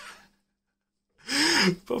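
A man's short, breathy throat noise about a second in, just before he speaks again, with a fainter breath at the very start.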